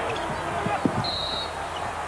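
A basketball dribbled on a hardwood arena floor, a few knocks under steady crowd noise, then a short high referee's whistle about a second in, blown for an offensive foul.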